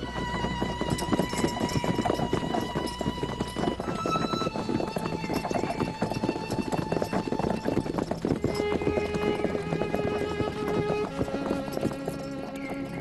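Hoofbeats of several horses on a dirt track, a dense, irregular clopping, under background music with long held string notes.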